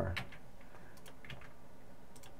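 A few light, scattered clicks of a computer keyboard and mouse in the first second and a half, as an object is selected and deleted in Blender.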